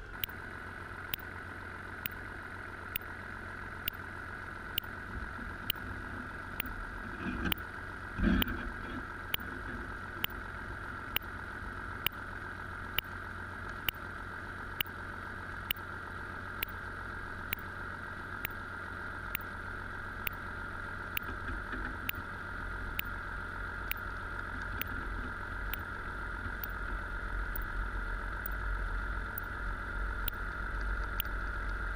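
Underwater recording of a boat engine: a steady drone with a low hum, cut by sharp ticks a little more than once a second. A few louder knocks come about seven to eight seconds in.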